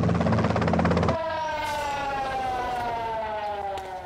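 A vehicle engine drones with a rapid even pulsing and cuts off about a second in. A police siren then sounds, its pitch falling slowly and steadily.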